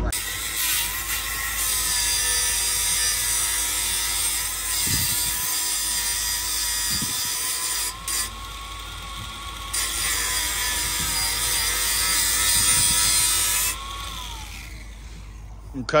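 Angle grinder cutting through the end of a steel polytunnel hoop tube: a steady high whine under harsh grinding noise. The grinding eases for a moment about eight seconds in, then bites again, and near the end the tool is switched off and its whine winds down.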